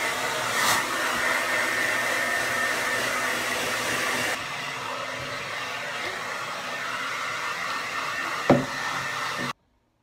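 Handheld hair dryer blowing steadily, with a faint whine in its rush of air; it becomes a little quieter and duller about four seconds in. A sharp knock sounds near the end, and the dryer sound cuts off suddenly just before the end.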